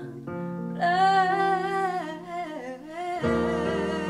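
A woman singing a long held note with vibrato over a guitar accompaniment, her voice sliding down at the end of the phrase. A keyboard chord comes in about three seconds in.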